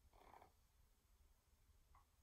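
Near silence: room tone with a faint low hum and one brief, faint soft sound just after the start.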